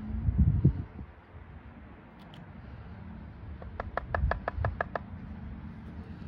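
A few low thumps in the first second. Then, about four seconds in, a quick run of about nine sharp clicks as a metal point picks and taps at a charred wooden bow-drill fireboard to dig out the ember. A low steady rumble lies underneath.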